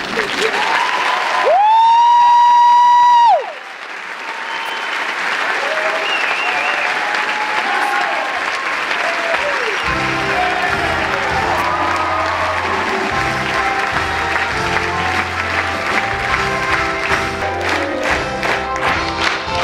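Theatre audience applauding at a curtain call. A loud, steady high note is held for about two seconds near the start. About ten seconds in, music with a steady bass beat comes in under the applause.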